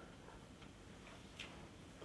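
Near silence: room tone in a hall, with a couple of faint clicks.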